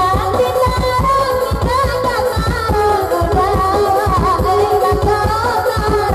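A woman singing a rabab pasisia song into a microphone, with a bowed rabab fiddle and an electronic keyboard (orgen) accompanying her over a steady drum beat.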